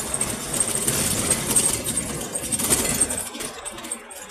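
A vehicle engine running, growing louder through the middle and fading near the end.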